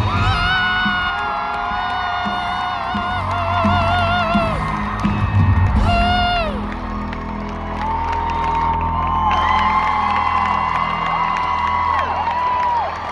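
Live band in an arena playing the last bars of a song: long held, wavering notes over a steady low bass. A cheering, whooping crowd sounds throughout.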